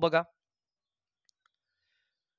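Near silence after a brief word, broken by two faint clicks close together about one and a half seconds in.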